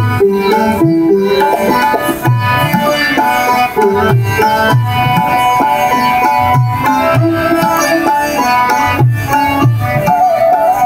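Live Hindustani instrumental ensemble: tabla keeping a steady rhythm, its deep bass drum strokes bending in pitch, under sustained melody from bansuri flute, sitar and harmonium.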